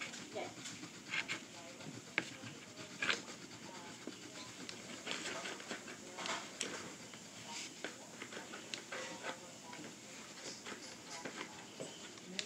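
Crayons scratching across paper, with scattered light taps and clicks as crayons are handled and set down.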